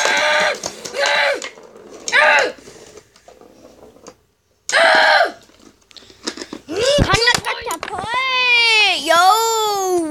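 Children's voices shouting in short bursts, then from about seven seconds in a long, high-pitched scream whose pitch rises and falls.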